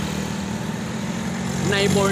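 A steady low engine hum, like a motor vehicle running. A man's voice starts near the end.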